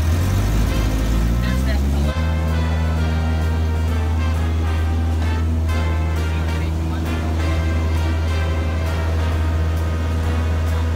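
Cessna 152's four-cylinder Lycoming engine heard from inside the cabin, rising in pitch over the first two seconds as power comes up for the touch-and-go, then running steady at high power. Background music plays over it.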